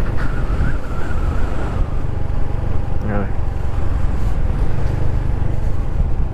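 Honda Pop 110i motorcycle's small single-cylinder engine running steadily as it rides along, mixed with wind rushing over the microphone.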